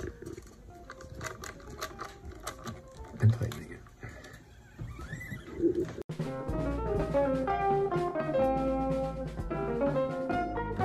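Light clicks and handling sounds from a screwdriver working the saddle clamps of a locking tremolo bridge. About six seconds in these cut off suddenly and background music with guitar notes and a steady bass takes over.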